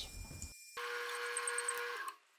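Benchtop metal lathe running with a faint, steady hum while its cutoff tool parts a ring off round steel tubing; the sound starts abruptly just under a second in.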